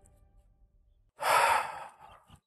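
A man's heavy sigh, one breathy exhale about a second in that fades off, after near silence.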